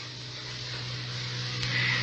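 Steady hiss over a low electrical hum from an old analogue recording, the hiss growing louder toward the end, with one faint click about one and a half seconds in.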